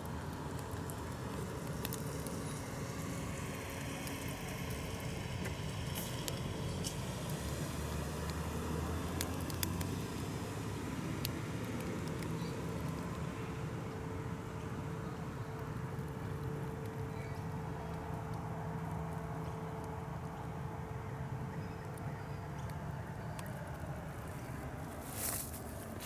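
Steady low outdoor background rumble with a few faint clicks.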